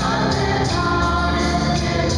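A church choir of men and women singing a hymn together, with steady low musical accompaniment underneath.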